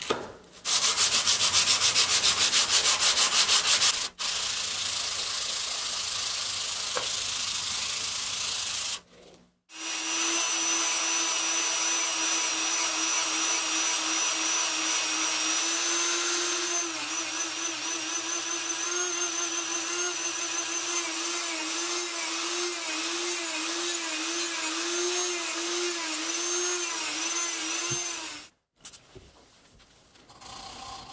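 Steel multitool blank being wet-sanded on an abrasive strip, starting with a burst of rapid, even rubbing strokes. After a short break a small electric power tool runs steadily for most of the rest, its pitch wavering in the second half, and it stops suddenly near the end.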